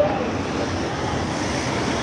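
Steady street traffic noise: a continuous even rush of passing cars, with a faint voice near the start.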